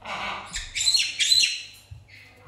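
Black-headed caique squawking: a run of three or four harsh, shrill squawks, loudest about a second in.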